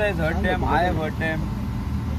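A man speaking in an interview, with a steady low rumble underneath.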